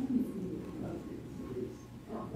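Low, indistinct murmur of a congregation's voices as people exchange greetings of peace.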